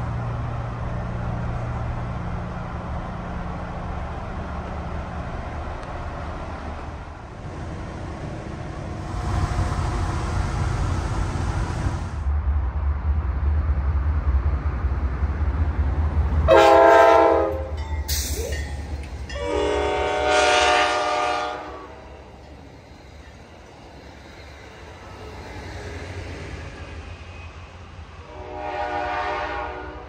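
An Amtrak GE Dash 8-32BWH diesel locomotive at the head of a train, its low rumble building as it approaches. Then it sounds its multi-note air horn three times: a blast about halfway through, a longer one a few seconds later, and one more near the end.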